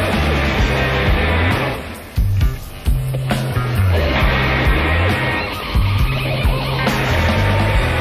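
Rock band playing live, full band with loud guitars, bass and drums. About two seconds in the sound drops back briefly, then the full band comes back in.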